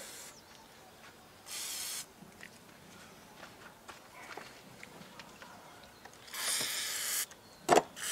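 WD-40 aerosol sprayed through its straw nozzle onto a seat box's clip catches: a short hiss about one and a half seconds in and a longer hiss of about a second near the end. A single sharp knock comes just before the end.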